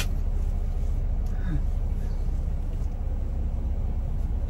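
Steady low rumble inside a stationary car's cabin with its engine running.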